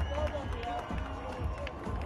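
Outdoor parade crowd sound: music with a deep repeating bass beat, mixed with the voices and calls of people lining the street.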